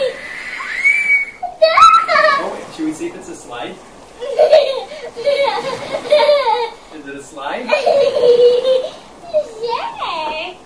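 A young child's high-pitched voice in playful bursts of squeals and sing-song sounds, with rising and falling pitch and no clear words, carrying a little echo from a small room.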